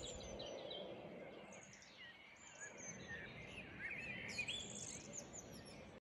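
Faint birdsong: songbirds chirping and singing short phrases over a quiet outdoor background, busiest about four seconds in.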